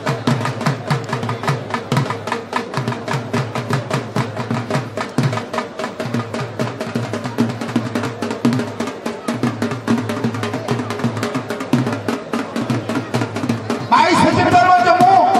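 Drums played in a fast, even rhythm of about four to five strokes a second, without a break.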